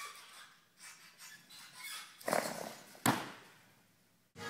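Quiet gym room tone, then two sudden thuds from gymnastics training, the louder and sharper one about three seconds in, fading away over a second.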